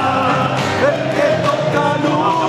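Live Argentine folk music: men singing into microphones, accompanied by acoustic guitar and a bombo legüero drum.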